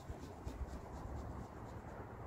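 Low, uneven wind rumble on the microphone, with a faint run of quick scratchy ticks over it.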